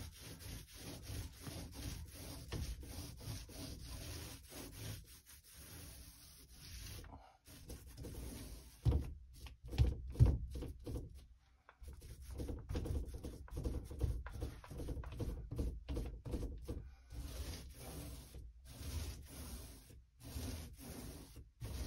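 Angled Chinex-bristle paint brush stroking wet paint on the wooden panels of a door in quick, repeated rubbing strokes, with two louder knocks about nine and ten seconds in.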